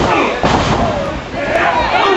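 Two hard impacts about half a second apart near the start, a wrestler's blows landing on an opponent in the ring, over steady crowd voices and shouts.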